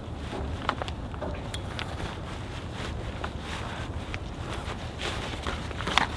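Cot rods being slid into the fabric straps of a carry bag: soft rustling of fabric with a few light knocks of the rods, over low wind rumble on the microphone.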